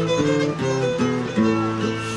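Acoustic guitar accompaniment playing a melodic instrumental interlude between the sung verses of an improvised cantoria, a continuous line of notes stepping up and down in pitch.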